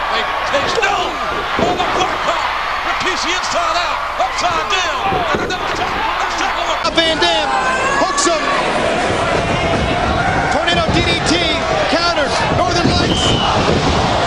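Pro-wrestling match audio: a crowd yelling and cheering over voices, with the thuds of wrestlers slamming onto the ring mat.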